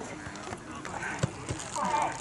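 Voices of footballers and onlookers calling and chatting at a distance across the pitch, with a few sharp knocks scattered through.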